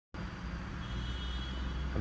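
Mahindra Quanto's three-cylinder diesel engine idling steadily, heard from inside the cabin.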